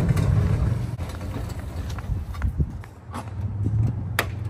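A vehicle engine running at low revs, dropping away after about a second and coming back steady near the end, with a few knocks and clunks.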